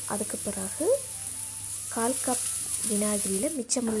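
Spiced chilli-garlic paste sizzling in hot oil in a wok, a steady frying hiss, as vinegar is added to the pan. A voice speaks over it.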